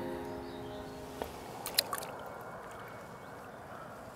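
A short held musical chord that stops about a second in, then faint water sounds with a few drips and clicks.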